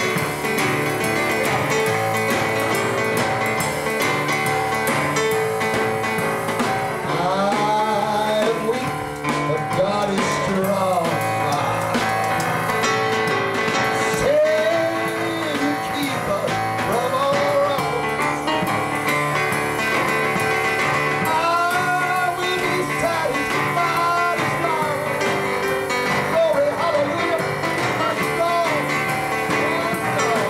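Live boogie-woogie piano played on a stage keyboard, with a man singing blues-style vocals in stretches over it from about seven seconds in.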